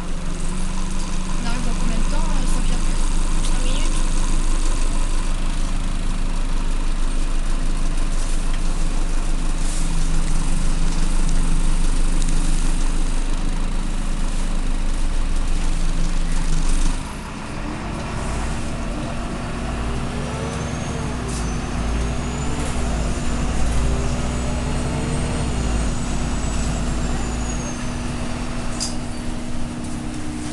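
Irisbus Citelis Line city bus diesel engine heard from inside the cabin, running steadily under way. About halfway through the sound drops suddenly to a quieter, steady idle.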